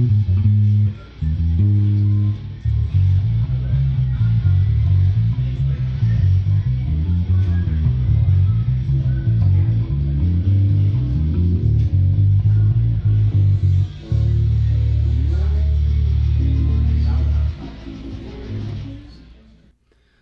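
A 2016 Squier Vintage Modified 70s Jazz Bass with roundwound strings played through a Fender Rumble 100 bass amp with volume and tone all the way up: a busy line of plucked low notes, then about fourteen seconds in a single long held note that rings for a few seconds and dies away.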